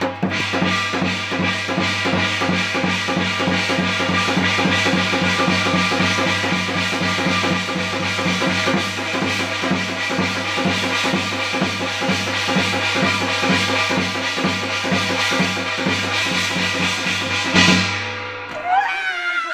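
Korean shamanic gut ritual music: a barrel drum beaten in a rapid, steady rhythm over a continuous sustained ringing tone, running evenly at full level.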